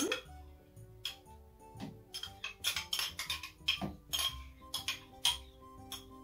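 A metal teaspoon clinking and scraping against a small ceramic cup, over and over, as yogurt is spooned out of it into a jug. Soft background music plays underneath.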